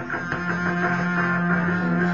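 Electric guitar, a Fender Stratocaster, playing a rock groove between vocal lines, with a low note ringing on steadily from about half a second in.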